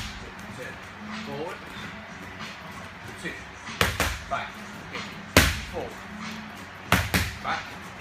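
Punches landing on focus mitts: sharp smacks, a quick pair about four seconds in, a single one about a second and a half later, and another quick pair about seven seconds in.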